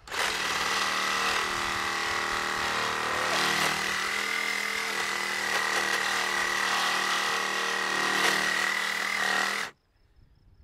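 DeWalt cordless reciprocating saw cutting through a car's thick steel roof pillar, running steadily with a high whine. It stops abruptly near the end.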